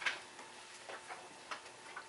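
A few faint, unevenly spaced clicks over quiet room tone.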